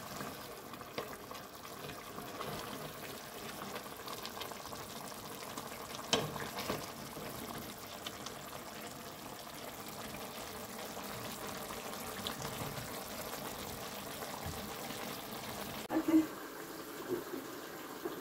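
Chicken stew simmering in a pot, a steady low bubbling and sizzling, with a few light knocks, one about six seconds in and more near the end.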